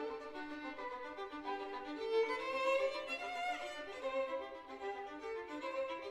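Two violins playing together in a classical duo, bowed notes changing continuously, with a line climbing in pitch a couple of seconds in.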